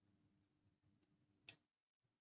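Near silence with a faint steady hum, and a single sharp click about one and a half seconds in.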